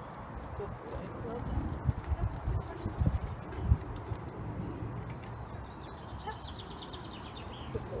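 Footsteps of a person and a small dog walking on stone paving slabs, with a few heavier thuds in the middle. A bird trills in the background near the end.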